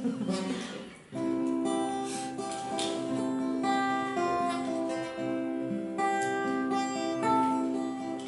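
Acoustic guitar played solo, a slow introduction of ringing chords that starts about a second in.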